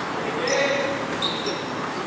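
Futsal training on a concrete court: the ball being kicked and bouncing, a few short high squeaks, and players calling out in the background.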